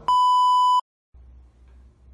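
A single steady electronic beep added in editing, loud and lasting just under a second, cut off sharply. It is followed by a moment of dead silence and then faint room tone.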